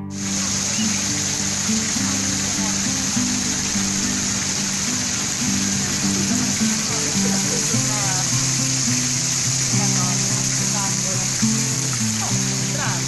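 Fountain jets splashing into a stone basin, a steady rush of falling water that starts at once. Guitar music plays underneath, with faint voices in the background.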